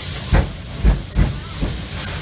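Steam locomotive No. 8630 (JNR Class 8620) under way, heard from the coach behind: four short exhaust chuffs in an uneven beat over a steady hiss of steam.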